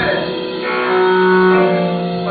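A live rock'n'roll band drops its drumming, and a held chord rings on steadily from the amplified instruments.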